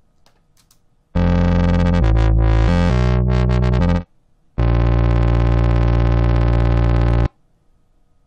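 Soundation's Wub Machine software synthesizer playing back a short monophonic MIDI phrase with a buzzy tone. Several notes of changing pitch come first, then a brief pause about four seconds in, then one long held note that cuts off sharply near the end.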